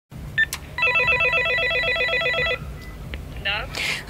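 Apartment-building door intercom (domofon) being dialled: a short keypad beep as a button is pressed, then the warbling calling signal for about two seconds. It stops with a click, and a brief voice follows near the end.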